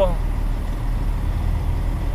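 Heavy truck's diesel engine running, heard from inside the cab as a steady low drone.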